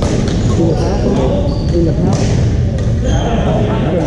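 Busy sports-hall din: many voices chattering and echoing in a large room, with a few sharp knocks from badminton rackets striking shuttlecocks, the clearest right at the start and about two seconds in.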